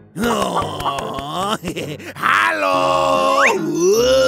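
Cartoon character voice making wordless grunts and wavering groans, then one long drawn-out groan in the second half. A quick rising squeak comes about three and a half seconds in.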